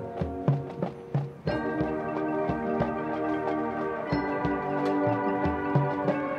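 Marching band playing: drum strokes and mallet percussion, then the full band comes in on a held chord about a second and a half in.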